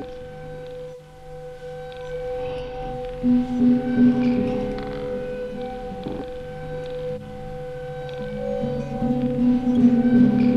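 Slow ambient music of long, held tones and chords, with the lower notes changing about three seconds in and again near the end.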